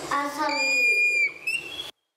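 Dry-erase marker squeaking on a whiteboard as a line is drawn: a steady high squeal for most of a second, then a short squeak rising in pitch.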